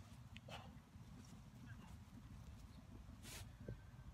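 Near silence: faint outdoor room tone, a low steady rumble with a few faint, scattered short scuffs or thumps.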